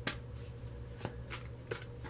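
Tarot cards being handled and drawn from the deck: three light card snaps, one at the start, one about a second in and one near the end, over a steady low hum.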